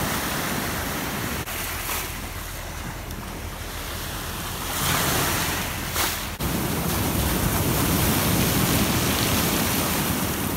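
Ship's wake waves breaking and washing up over a pebble beach, with wind on the microphone. The surf swells louder about five seconds in and again from about seven seconds on.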